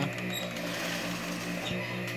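Opened Philips DVD player giving a steady low mechanical hum, with a couple of faint clicks near the end as its front-panel buttons are pressed. The buttons' switches don't always catch.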